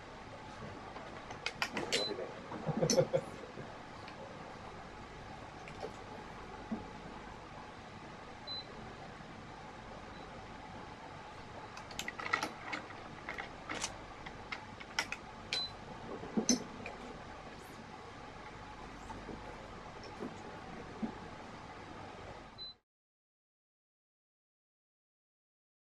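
Scattered light clicks and taps of badminton racket stringing on an Adidas stringing machine, as string is handled and the clamps are set, with a few duller knocks over steady background room noise. The sound cuts off abruptly near the end.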